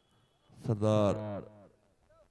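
A man's voice giving one drawn-out call, about a second long, starting about half a second in and falling in pitch at its end.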